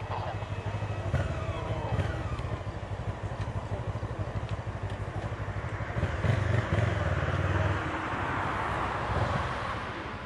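Distant jet engines of a Boeing 737-800 on approach, heard as a broad hiss that swells over the last few seconds, over a steady low pulsing rumble.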